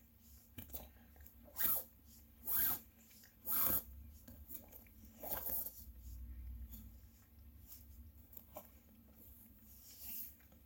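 Faint, short rasps of nylon cord rubbing and sliding against itself as a trucker's hitch is pulled tight, four of them in the first half or so, with soft rustling between.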